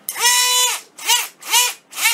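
Harbor Freight Drill Master rotary tool's small brushed DC motor running at 24 volts from a bench power supply: a high whine that swells up and drops off four times, about every half second. Even at this doubled voltage it has almost no power.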